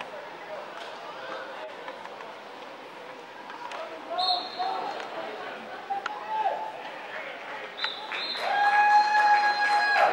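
Ultimate frisbee players calling and shouting to each other across an open field over a steady background hiss. Near the end comes a louder, long held shout.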